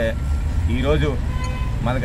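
A man's voice breaking off, one short vocal sound about a second in, then resuming near the end, over a steady low rumble of outdoor street noise.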